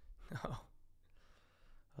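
A man's brief exclamation "oh", then quiet.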